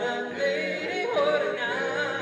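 Male a cappella vocal group singing together in several-part harmony, unaccompanied voices only.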